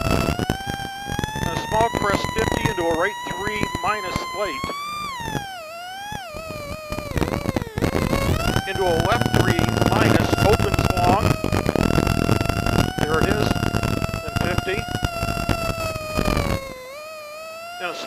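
Plymouth Neon rally car's four-cylinder engine heard from inside the cabin, driven hard. Its whining note climbs over the first five seconds, drops sharply and wavers, then holds steady before falling off shortly before the end. Frequent knocks and rattles sound through it.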